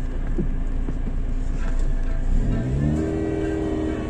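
Vehicle engine running with a low rumble, heard from inside a car cabin; about two and a half seconds in an engine note rises, as with revving, and then holds steady.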